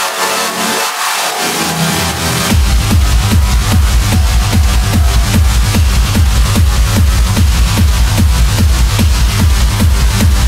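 Techno DJ mix played loud over the club sound system. The kick and bass are filtered out at first, then drop back in about two and a half seconds in as a steady, evenly repeating kick-drum beat.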